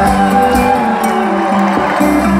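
Live band playing a sertanejo song through the stage PA, heard from within the audience: held notes over a pulsing bass, with the crowd faintly under it.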